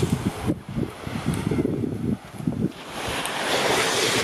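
Wind buffeting the camera microphone over the wash of small waves on a sandy shore. A hissing swell of surf is strongest in the first half-second and builds again near the end.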